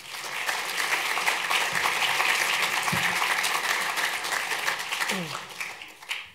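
Audience applauding, which starts straight away and dies down near the end.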